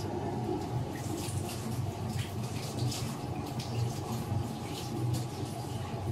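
Vijayalakshmi Smart 2-litre tilting table-top wet grinder running, a steady low motor hum with the wet churning of batter in its drum. It runs very silent, with no vibration at all.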